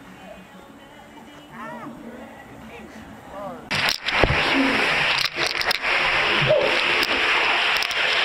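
Water rushing and sloshing inside an inflatable zorb ball as it rolls, starting suddenly about four seconds in, with knocks against the plastic shell.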